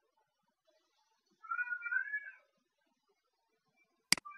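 One high, wavering animal call lasting about a second, starting about a second and a half in.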